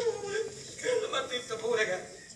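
Speech only: an actor talking on stage.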